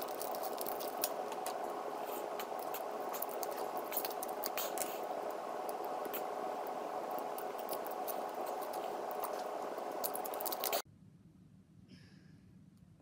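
Sped-up handling of a small plastic item: rapid scattered clicks and rustles over a steady hiss, cutting off suddenly near the end.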